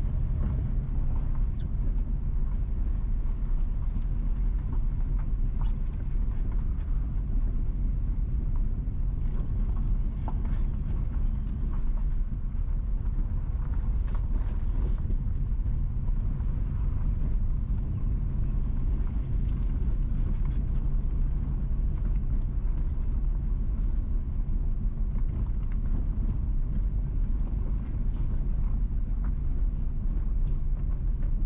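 Steady low rumble of a car's engine and tyres on the road, heard from inside the cabin while driving slowly, with a few faint high-pitched tones now and then.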